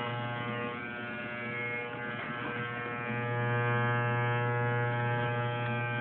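Electric hair clippers running with a steady buzz, a little louder in the second half.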